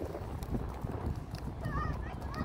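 Wind buffeting the microphone: a steady low rumble with scattered soft knocks, and a short wavering high call near the end.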